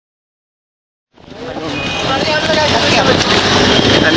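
Busy city street traffic heard while riding through it in a bike-taxi. The sound fades in about a second in and then holds steady, with a few brief pitched tones over the din.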